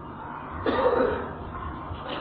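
A man clears his throat once: a short rough sound of about half a second, starting about two-thirds of a second in.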